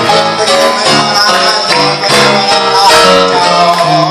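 Electronic keyboard playing an instrumental passage with a guitar-like plucked voice, over a bass line that steps from note to note.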